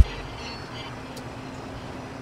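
A break in the background music: only a faint, steady hiss remains until the music returns just after.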